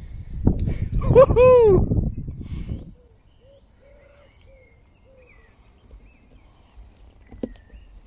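Wind buffeting the phone's microphone, with one short voiced sound in the middle of it; it stops suddenly about three seconds in. Then faint birdsong: a run of soft, low, repeated notes followed by a few higher chirps.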